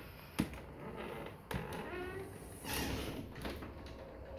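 Quiet indoor room tone with a few light knocks, one about half a second in and another about a second and a half in, and a faint brief squeak near the middle.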